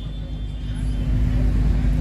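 Steady low background rumble with a faint hum, with no speech over it.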